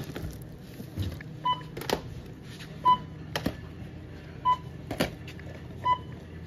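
Checkout barcode scanner beeping four times, about a second and a half apart, as items are scanned. A light knock follows each beep as the item is set down on the metal counter.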